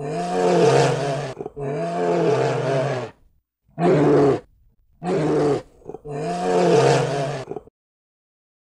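Bear roaring in a series of five long, arching growls, each about one to one and a half seconds, with short gaps between them; they stop shortly before the end.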